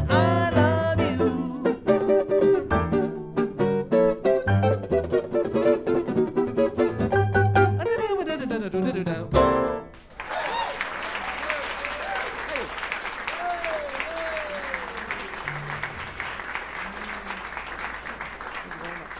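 A jazz trio of archtop guitar, piano and upright bass plays the last bars of a swing tune and ends on a loud final chord about nine seconds in. Audience applause and cheering follow until the end.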